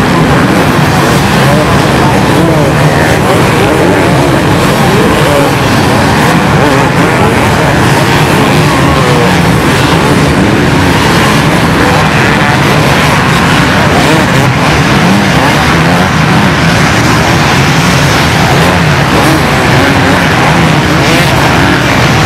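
A pack of dozens of motocross and enduro bikes revving hard together as they climb sand dunes. It is a loud, unbroken mass of overlapping engines, with individual bikes' revs rising and falling through it.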